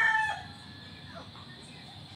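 The tail of a rooster's crow: a long, held final note that cuts off about a third of a second in, followed by low background noise.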